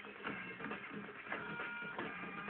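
Fight-scene soundtrack of a film played on a television and heard through its speaker: background music with short knocks and hits.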